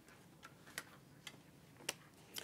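A few faint, irregular clicks and taps from things being handled on a lectern, picked up by its microphone. The strongest click comes near the end.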